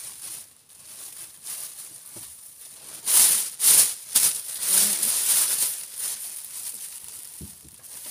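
A thin disposable plastic apron rustling and crinkling as it is pulled on over the head and smoothed down with gloved hands. The loudest sharp crinkles come about three to four seconds in, followed by softer rustling.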